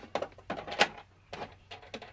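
A clear plastic bag of small plastic toy pieces being handled against a plastic dollhouse, giving a handful of short, sharp crinkles and taps.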